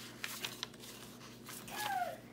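Paper pages of a handmade junk journal rustling and crinkling as they are turned and handled. Near the end comes a short falling voice sound, the loudest moment.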